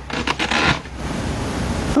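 A steady rushing, wind-like noise, a sound effect under a tense standoff in an animated soundtrack, with a few faint clicks in the first second.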